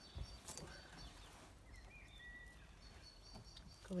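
Faint rustling and crackling of dry bamboo leaves and coconut-fibre substrate as hands dig through a glass terrarium, with a few light clicks in the first second and a short faint squeak about two seconds in.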